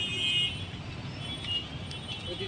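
Road traffic from the street beside the garden: a steady low rumble of passing vehicles, with a faint high horn-like tone near the start and again about a second in.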